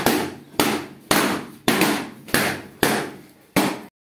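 A regular series of loud, sharp bangs, about two a second, each ringing briefly in the room, stopping abruptly near the end.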